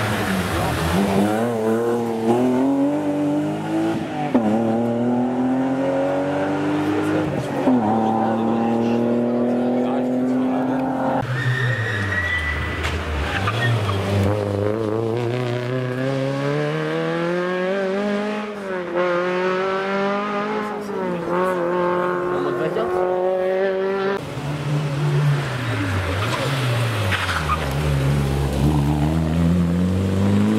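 Rally cars accelerating hard through the gears on a tarmac stage, engine pitch climbing and dropping back at each upshift. First a BMW E30 rally car, then, after two cuts, Peugeot 205 rally cars.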